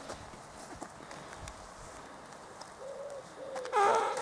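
Faint lakeside quiet with a pigeon cooing softly a couple of times in the second half. A short, louder sound comes right at the end.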